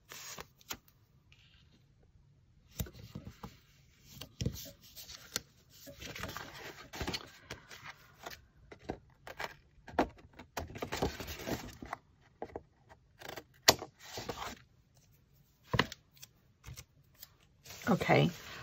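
Washi tape being pulled from its roll and pressed along the seam of kraft-paper pages, with paper rustling, scratchy rubbing and occasional clicks and taps as the paper is handled.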